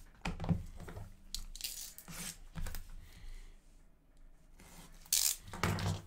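Plastic shrink-wrap being torn and handled on a sealed box of hockey cards: scattered rustles and scrapes, with a louder rip a little after five seconds in.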